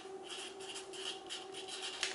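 Felt-tip permanent marker writing on paper: a run of short, quick scratchy strokes as a word is lettered.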